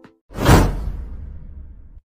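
Whoosh transition sound effect: a rush of noise swells about a quarter second in, peaks quickly and fades away over the next second and a half over a low rumble.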